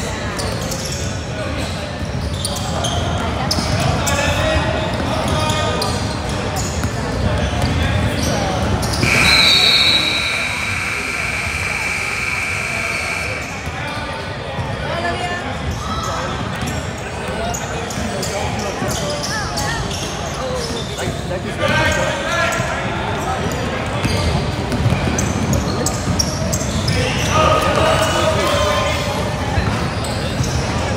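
Youth basketball game in a gym: the ball bouncing and players' feet on the hardwood floor, with spectators' voices echoing in the hall. About nine seconds in, a steady high tone sounds for four to five seconds.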